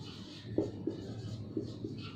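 Marker pen writing on a whiteboard: irregular scratchy strokes with a few light taps as the tip meets the board.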